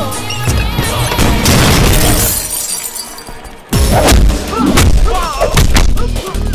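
Action-film fight soundtrack: background score layered with punch and impact effects. The sound thins out a little past the middle, then a sudden loud crash comes in, followed by more sharp blows.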